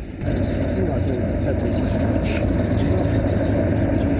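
A steady low engine drone from the field recording, with faint voices behind it.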